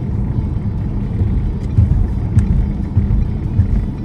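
Low, steady rumble of road and engine noise inside a moving car's cabin, with a few soft low thumps partway through.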